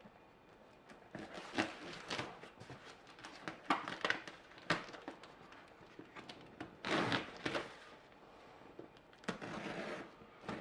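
Hands working a cardboard box: scattered taps and rustling scrapes as packing tape and a plastic packing-slip pouch are peeled off the cardboard, with longer scraping stretches about seven seconds in and again near the end, where a knife is put to the tape.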